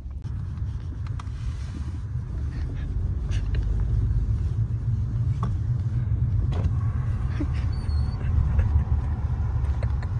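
Steady low rumble of a car heard from inside the back seat, with a few faint clicks and knocks in the second half.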